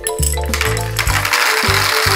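Red Smarties (candy-coated chocolates) pouring from a glass into a plastic toy bathtub: a dense, continuous clatter of many small pieces that starts a moment in. Background music with a bass line plays underneath.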